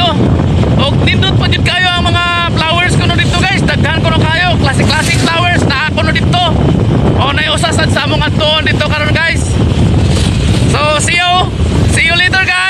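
Wind buffeting the microphone on a moving motorcycle, a steady low rush, with a person's voice coming and going over it.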